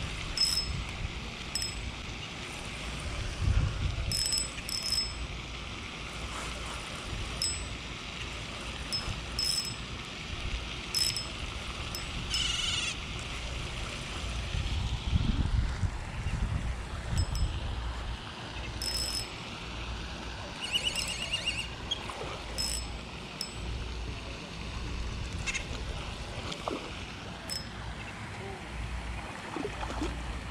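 Handling of a spinning rod and reel while a hooked fish is reeled in, over low wind rumble on the microphone. Short high chirps recur every second or two, with a brief warbling call near the middle.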